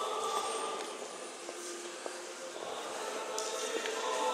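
Russian Orthodox church choir singing long held chords. The chords fade down in the middle and swell back near the end.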